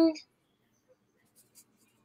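A woman's sung "ding" ends just after the start, then near silence with a few faint scratches.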